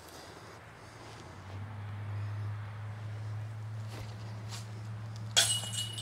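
A steady low motor hum, such as a distant engine, grows louder about a second and a half in and holds. A short sharp burst of sound comes near the end.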